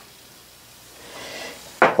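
Quiet room tone, then faint rustling of hands handling small brass engine parts, ending in a short knock on the bench near the end.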